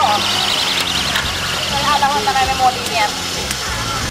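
Spectators at a greyhound track shouting and cheering as the dogs race past, with wavering raised voices over a steady rushing noise.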